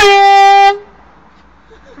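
Air horn blasted once, a loud steady honk of about three quarters of a second that stops abruptly.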